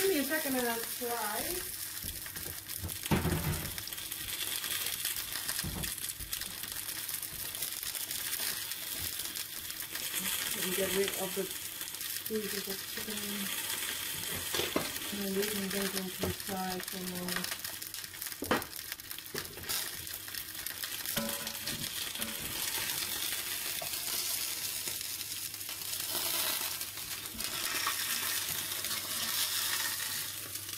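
A whole chicken sizzling steadily as it browns in a hot casserole pot on a gas hob, with a couple of sharp knocks.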